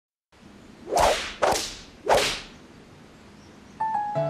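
Three quick whooshes, like a whip swishing through the air, each a short burst of hiss about half a second apart. A musical tone comes in just before the end.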